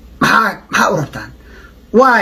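A man's voice: two short, emphatic vocal bursts in the first second, then a lull.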